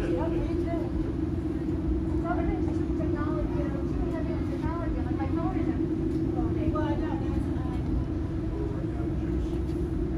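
Indistinct chatter of other visitors' voices over a steady low hum and rumble.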